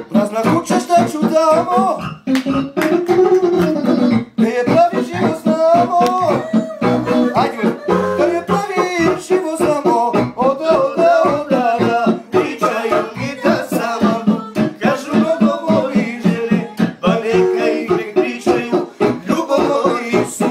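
Guitar played live in a fast, even rhythm of plucked strokes, with a bending melody line riding over it.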